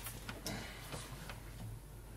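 A few short, soft clicks, about one every half second, over a steady low room hum.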